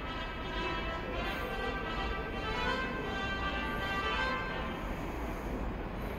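A train-approach melody played over the station's public-address speakers, a steady chiming tune that signals an Incheon-bound train is about to arrive.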